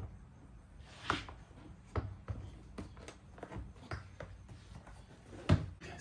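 Plastic car door trim panel being lifted off the door: light handling knocks and rustles, with a few sharper clicks about a second in, at two seconds and the loudest near the end.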